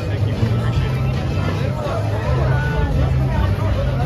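Babble of crowd voices and chatter over steady area background music with a low bass line.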